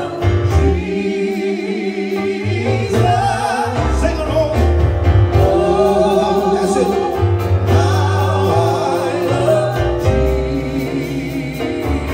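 Live gospel worship song: two women singing into microphones over keyboard and drums, with steady bass notes and cymbal taps underneath.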